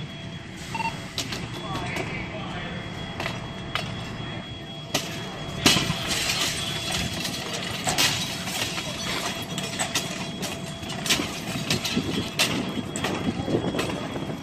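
Structure fire scene: fire-truck engines run as a steady low rumble under onlookers' voices, while irregular sharp cracks and pops from the burning house come every second or two, most densely from about five seconds in.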